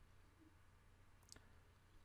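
Near silence, with one or two faint clicks a little past one second in, typical of a computer keyboard key being pressed.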